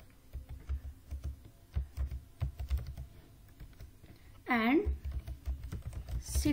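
Typing on a computer keyboard: a run of irregular keystrokes with soft low thuds. About four and a half seconds in, a brief drawn-out vocal sound from the typist is the loudest thing.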